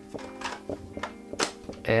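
Plastic clicks and light knocks of a Holga 120CFN medium-format camera being handled, its plastic back being fitted onto the body, about half a dozen sharp ticks. Soft background music holds a steady chord underneath.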